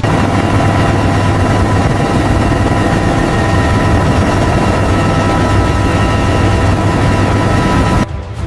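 Large helicopter in flight heard from inside its cargo cabin: a steady, loud rush of rotor and engine noise over a low drone, with several steady high whining tones. It cuts off suddenly at the end.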